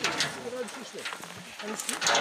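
Indistinct voices of people talking off-mic, with a brief rustle or knock at the very start.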